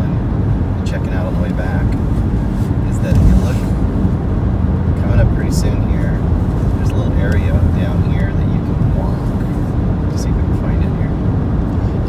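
Steady low road rumble of a car driving, heard from inside the cabin, with faint talk underneath.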